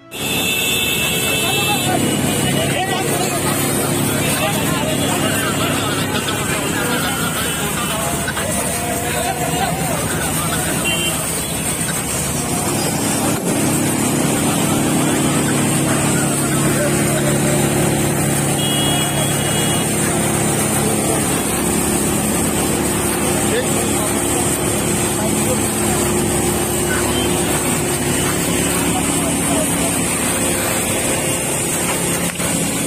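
Steady, loud rushing of water sprayed from fire hoses onto a burning car, over a running engine hum that grows stronger partway through. Indistinct voices of people carry underneath.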